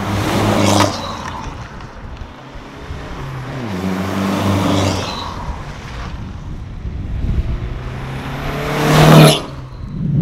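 Stage 2 remapped Hyundai Verna 1.6 CRDi diesel with an aftermarket downpipe and a smaller muffler, driven hard past the camera several times. Its engine note rises under acceleration, with a short loud pass about half a second in and the loudest pass just after nine seconds, which drops away suddenly.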